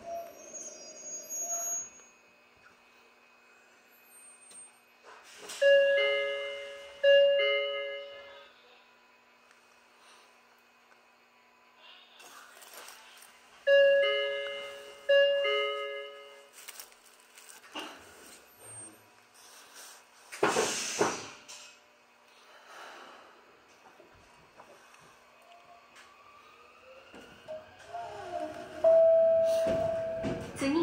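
A two-note electronic ding-dong chime on a stopped electric commuter train, sounding twice in quick succession about six seconds in and twice more about eight seconds later. A short burst of hiss follows about twenty seconds in. Near the end a rising whine sets in as the train pulls away.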